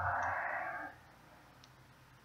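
A person's long, noisy breath into the microphone, which stops about a second in, followed by a faint mouse click.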